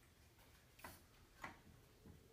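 Near silence, with two faint, short strokes of a dry-erase marker on a whiteboard, a little under a second in and again about half a second later.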